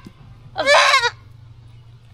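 A young Nubian buck kid bleats once, a loud call of about half a second starting about half a second in. He is being held and dosed by mouth with a syringe.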